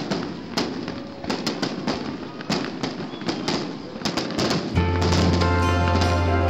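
Aerial fireworks bursting: an irregular run of sharp bangs and crackles. About five seconds in, music starts with a steady low note.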